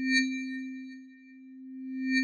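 Electronic chime-like tone for a title card: a steady low hum with thin, high ringing overtones that swells up and fades away, then swells again near the end.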